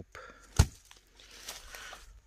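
A wooden board is dropped back onto dry leaf litter, landing with one sharp thunk a little over half a second in. Soft rustling through dry leaves follows.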